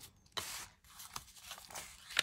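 Paper rustling as hands pick up and handle vintage sewing pattern pieces: a short rustle about a third of a second in, then faint shuffling and a couple of light clicks.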